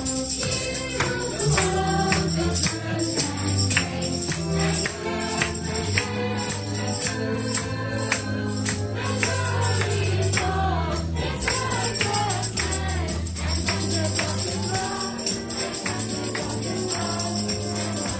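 A small choir of mixed voices singing a gospel song together, with a tambourine shaken to the beat.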